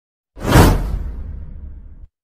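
A whoosh sound effect with a deep rumble under it. It starts about a third of a second in, swells quickly, then fades away over the next second and a half.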